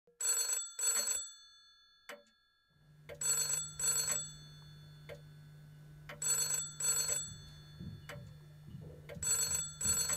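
Black rotary-dial telephone ringing in the British double-ring pattern: four pairs of short rings, about three seconds apart. A steady low hum comes in about three seconds in.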